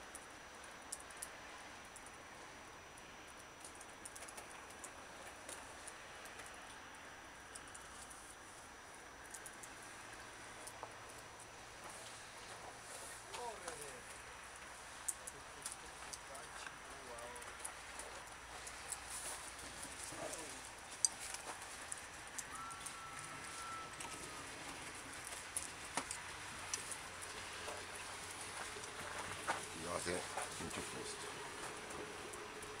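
Faint outdoor ambience: a low steady background hiss with distant, indistinct voices and scattered small clicks. There are a few faint short calls, and a brief whistle-like tone about two-thirds of the way through.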